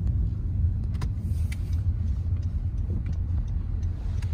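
Steady low rumble of a car driving slowly, heard from inside the cabin: engine and tyre noise, with a few faint clicks.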